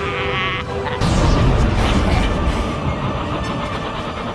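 An old man's wavering, cackling laugh for about the first half-second. It gives way to loud dramatic film music mixed with sound effects.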